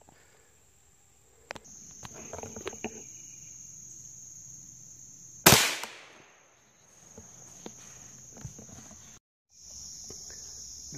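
A single gunshot about halfway through, dying away over half a second, over a steady high drone of insects.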